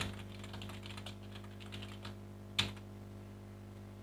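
Typing on a computer keyboard: a quick run of soft keystrokes for about two seconds, then one louder click a little later, over a steady low electrical hum.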